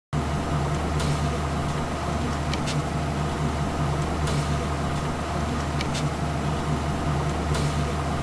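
Steady mechanical hum of an elevator car travelling upward, with light clicks about every second and a half.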